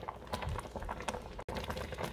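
Sweetened milk syrup of chongos zamoranos boiling in a pot after about three hours on medium heat, a dense patter of small bubble pops as it reduces. The sound cuts out abruptly for an instant about one and a half seconds in.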